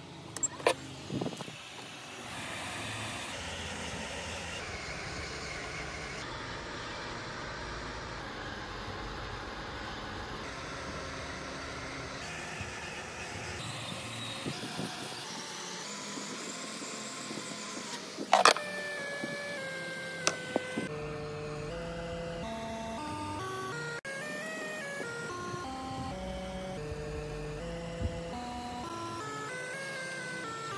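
Hot air rework station blowing steadily over a MacBook Air A1466 logic board while the EFI firmware chip is desoldered, with background music playing. A few sharp clicks come just after the start and again about two-thirds of the way in.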